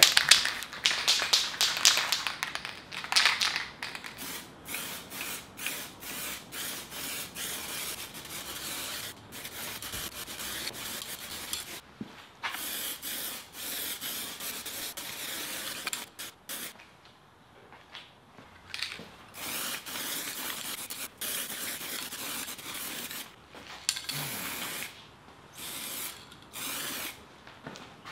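Aerosol can of black spray paint spraying in a series of hissing bursts of varying length with short pauses between. In the first few seconds the mixing ball rattles quickly inside the can as it is shaken.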